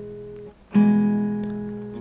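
Acoustic guitar: a ringing chord dies away and is damped about half a second in, then a new chord is plucked and rings out, slowly fading.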